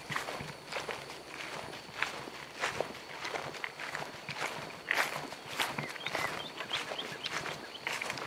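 Footsteps walking outdoors, about two steps a second.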